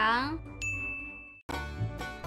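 A woman's voice trails off with a falling pitch. It is followed by a single steady electronic ding, a high tone held for just under a second that starts and stops abruptly. Music starts right after it.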